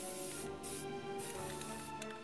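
Aerosol spray can spraying paint onto plastic model parts in about three short hissing bursts, with background music playing throughout.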